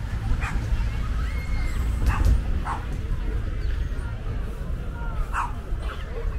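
A dog barking four short times over background voices and a low steady rumble.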